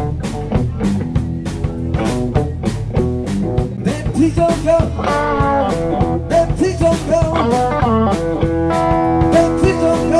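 Blues-rock band music: electric guitar playing a lead line with bent notes over bass and a steady drum beat, settling into long held notes near the end.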